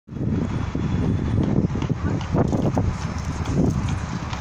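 Wind buffeting the phone's microphone, a loud, uneven low rumble, with a few crunching steps on gravel about halfway through.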